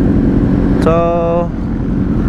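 Honda CBR600RR's inline-four engine idling steadily, a dense, unbroken low rumble.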